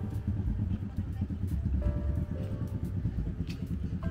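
Low engine rumble of a motorcycle riding past along the market lane, over a background of music and voices.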